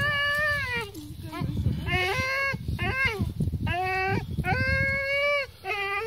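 German Shepherd whining in a series of high-pitched squeals while gripping a bite tug, about seven calls, most short and the longest held for about a second.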